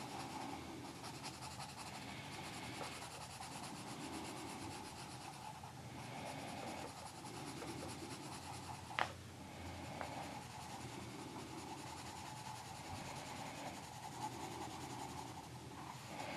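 Tombow Irojiten coloured pencil shading on paper: soft, repeated scratchy strokes, back and forth, with one sharp tap about nine seconds in.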